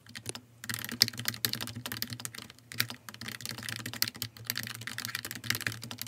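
Fast, continuous typing on a backlit computer keyboard: a dense run of key clicks starting about half a second in, with a faint steady low hum underneath.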